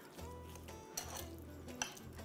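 A fork mashing raspberries and sugar in a glass bowl, with a couple of light clinks of the fork against the glass, over quiet background music.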